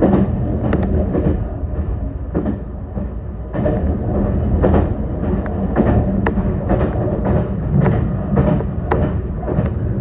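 Meitetsu Bisai Line electric train running along the track, heard from inside the cab: a steady low rumble with sharp wheel clacks at irregular intervals.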